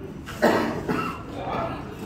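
A person coughing: one sharp cough about half a second in, the loudest sound, trailing off with a smaller follow-up.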